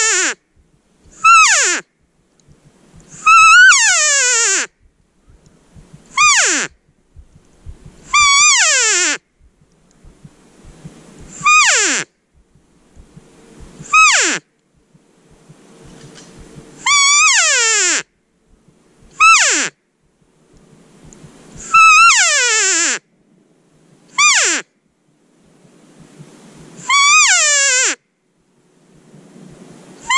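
Elk cow calls: a series of about a dozen high, nasal mews, one every two to three seconds, each sliding sharply down in pitch.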